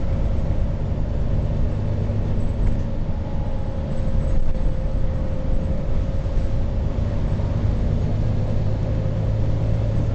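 Steady drone of a moving bus heard from inside its cabin: low engine and road rumble, with a faint steady whine above it.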